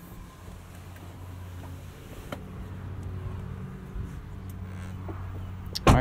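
The Discovery's turbo-diesel six-cylinder engine running steadily with a low, smooth hum, heard from inside the cabin. A sharp thump comes just before the end.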